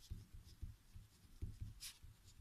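Pen writing on a paper worksheet: faint, irregular scratching strokes with soft low taps, one sharper scratch near the end.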